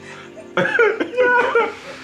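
A burst of loud laughter with coughing in it, starting about half a second in and lasting just over a second, over steady background music.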